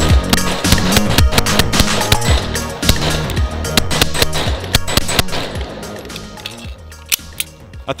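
Smith & Wesson M&P 2.0 pistol firing a rapid string of shots, each echoing off the surroundings, that thins out and stops about two-thirds of the way through. Background music plays underneath.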